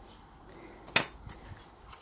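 A small metal wallet frame bar set down on a table, giving one sharp metallic clink about a second in, with faint handling of the wallet around it.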